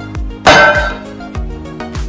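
A boot stamps once, hard, on a steel plate about half a second in, punching out a disc ringed with drilled holes: a single sharp metallic bang that rings briefly. Background music with a steady beat plays throughout.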